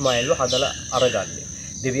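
A man speaking, with a short pause in the middle, over a steady high-pitched insect whine from the surrounding garden.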